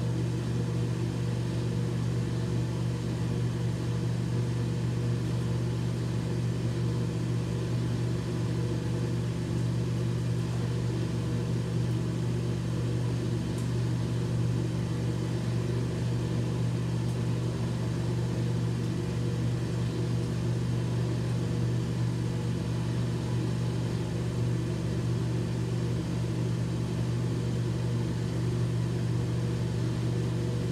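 A steady low mechanical hum, unchanging in pitch and level.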